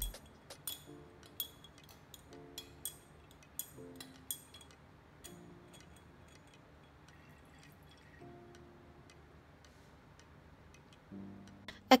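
Glass stirring rod clinking against the inside of a glass conical flask as the solution is stirred: light, irregular clinks over the first four or five seconds, then they stop. Soft background music with plucked notes runs underneath.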